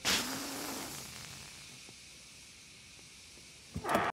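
Hissing from the crumpled, smoking front of a car just crashed into a lamp post. It starts with a brief burst and fades over about two seconds to a faint hiss.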